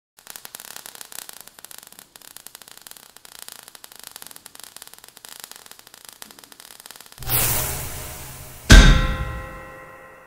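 Logo sound effects: a faint crackle of falling sparks for about seven seconds, then a loud swell of noise. A sharp metallic clang follows, the loudest sound, ringing out with several tones as it fades.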